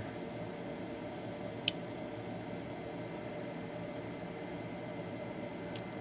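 Faint steady hiss with one short, sharp click a little under two seconds in: a small toggle switch being flipped to put a capacitor across the transistor's base resistor in a joule thief circuit.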